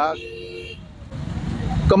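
Road traffic: a motor vehicle's low rumble grows louder through the second half, after a short steady tone in the first second.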